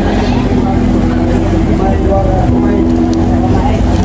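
Steady low rumble of a moving vehicle, heard from inside, with voices over it.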